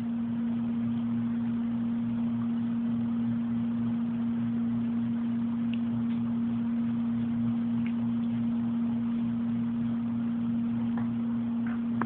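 A steady low hum at one constant pitch, with a faint hiss, running unchanged throughout.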